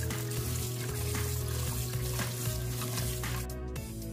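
Background music with held bass notes over tap water running and splashing onto noodles in a stainless steel strainer. The water hiss stops about three and a half seconds in, leaving the music.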